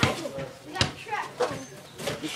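Voices talking and laughing in the background, with two sharp clicks, one at the start and one a little under a second later.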